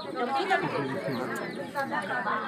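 Several people talking over one another at once: general chatter of a gathered group.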